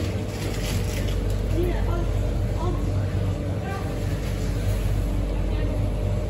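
A steady low hum with faint, distant voices over it, heard in a small shop.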